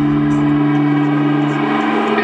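A live band's long held chord ringing steadily with no drums, its lowest notes fading away near the end.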